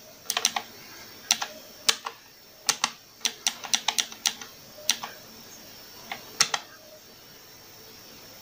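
Arcade push-button microswitches on a home-built wooden controller clicking as buttons are pressed and released with one finger: about twenty sharp clicks at an uneven pace, mostly in quick pairs, with a pause just after the middle.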